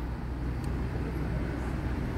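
Steady low rumble of street traffic, with a steady engine hum underneath.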